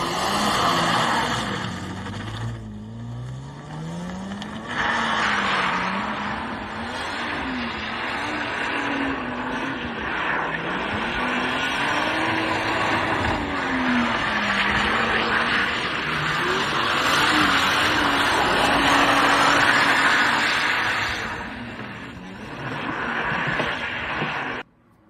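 Drift car's engine revving up and down over and over, with one clear climbing rev a few seconds in, over a continuous hiss of tyres sliding on tarmac.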